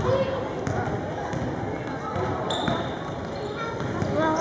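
A basketball dribbled on a hardwood gym floor, a run of bounces as a player brings the ball up the court, with voices in the background.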